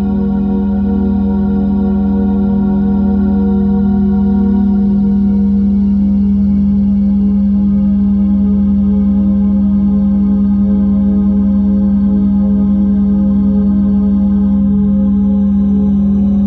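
Sustained synthesized meditation tone: one loud, steady low pitch with a stack of organ-like overtones and a slight wavering in the bass. It swells a little over the first few seconds, then holds level.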